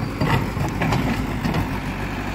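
Diesel engine of a JCB backhoe loader running steadily while its backhoe arm digs soil and rock.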